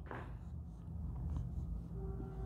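Marker pen writing on a whiteboard: faint scratchy strokes as lines and a ring are drawn.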